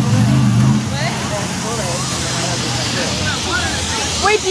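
A low, steady motor hum that weakens about a second in and fades by about three seconds. Voices talk in the background over an outdoor hiss.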